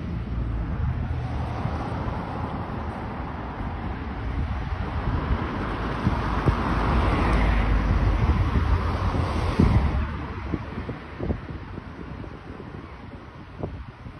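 Wind buffeting a phone microphone outdoors, a low rumble under a rushing noise that swells to a peak around the middle and fades away near the end.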